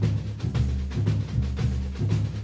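Background music with a heavy, steady bass drum beat and bass line.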